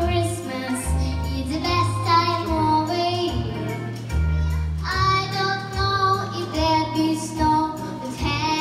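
A young girl singing a Christmas pop song into a microphone over instrumental accompaniment, with a bass line that moves to a new note every second or so.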